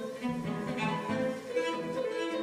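Cello and grand piano playing classical chamber music together, a quick run of distinct notes.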